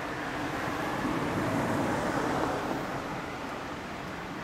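Suzuki Katana motorcycle engine idling through a Moriwaki aftermarket exhaust, a steady running sound that grows slightly louder for a second or two in the middle.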